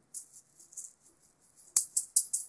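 Juggling balls rattling and jingling in the hand, with two sharp clicks near the end as the throws begin.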